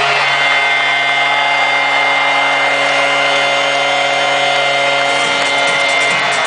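Arena goal horn blaring one long, steady note after a goal, cutting off about five seconds in, over a cheering hockey crowd.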